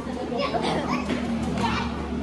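Many children's voices chattering and calling out at once, a crowd of kids talking over each other, with a steady low hum underneath.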